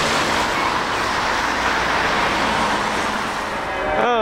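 Road traffic: cars passing close by on the road, the tyre noise swelling about a second in and easing off near the end.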